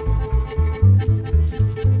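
Violin played by pulling a horsehair thread tied to its string, drawing a sustained, raspy string tone. Under it runs a plucked bass line pulsing about four times a second.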